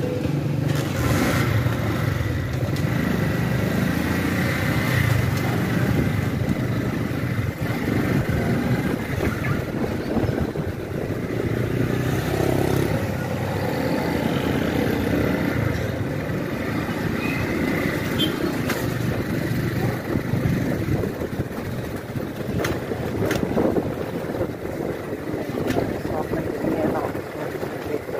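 A small motorcycle's engine running steadily while it is ridden, heard from the rider's own position with road noise.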